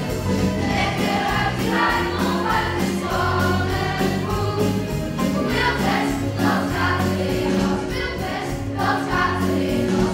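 Group of children singing a Dutch cowboy song in unison over instrumental accompaniment with a steady beat.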